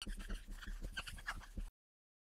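Dry-erase marker squeaking and scratching across a small whiteboard card as words are written in quick strokes. It cuts off suddenly after about a second and a half.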